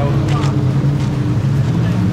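Jet ski engine running steadily, a low drone whose pitch steps up slightly near the end, with wind on the microphone.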